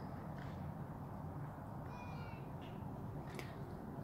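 Quiet outdoor city ambience with a steady low hum and a bird calling faintly a few times, the clearest call about two seconds in.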